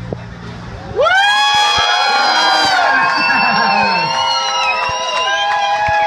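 Audience cheering and screaming with many overlapping high, gliding whoops, breaking out loudly about a second in as the last bass notes of the music stop.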